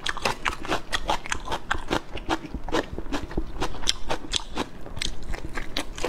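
Close-miked chewing and biting of a mouthful of enoki mushrooms in chili sauce: a quick, irregular run of wet crunches.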